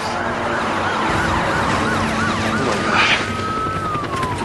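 Emergency sirens, more than one at once, their pitches rising and falling. Quick wavering whoops come early, and one slow wail climbs and then slides down near the end.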